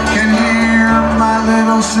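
Live acoustic band playing: strummed acoustic guitars, mandolin and upright bass, with a man singing over them.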